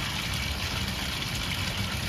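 Steady splash of water falling from a cascading barrel garden fountain, over a constant low rumble.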